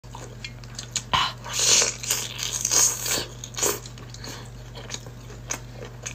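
A person biting and chewing chili-coated seafood close to the microphone, in irregular wet mouthfuls.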